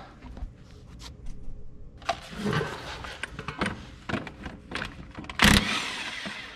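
Clicks and scraping of tools being handled, then a loud burst about five and a half seconds in as a cordless impact wrench spins the nut off a tractor's tie rod end.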